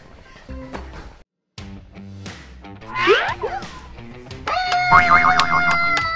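Edited-in soundtrack: a cartoon sound effect with pitches sliding up and down about three seconds in, then background music starting about a second and a half later, with held tones over a quick, even plucked rhythm.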